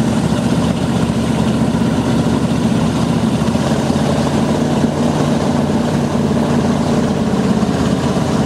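A motorboat's engine running steadily at speed, with water rushing and spraying past the hull.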